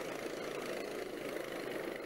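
Motor scooters running steadily as they ride through floodwater on a road, with water splashing around their wheels.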